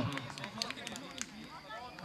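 Faint on-pitch sound of an amateur football match: distant shouts from players, with a few short, sharp knocks about half a second to just over a second in.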